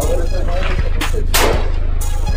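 Two rifle shots at a firing range, about a second in and again less than half a second later.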